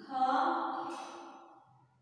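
A person's voice holding one long, drawn-out vowel that fades away over about a second and a half.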